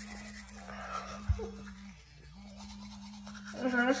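Teeth being brushed with a battery-powered toothbrush: a steady low motor buzz that sags briefly in pitch about two seconds in, under the scrubbing of bristles on teeth. A single soft bump about a second in.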